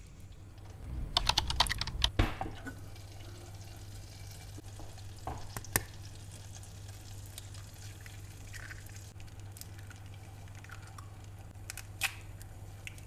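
Small clicks and knocks of hands working with objects: a quick run of them early on, a single sharp click about halfway, then a few faint light sounds. Underneath runs a steady low hum, while eggs go into a saucepan on the stove.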